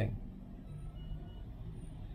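Quiet room tone: a steady low rumble, with the tail of a spoken word fading out right at the start.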